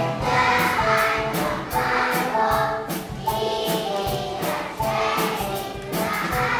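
A large choir of young children singing together over a musical backing with a steady beat.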